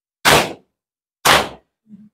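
Mourners beating their chests with open palms in maatam: two sharp slaps about a second apart, keeping a steady beat.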